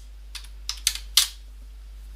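About four sharp clicks from a computer keyboard and mouse being worked, bunched in the first second and a quarter, over a low steady hum.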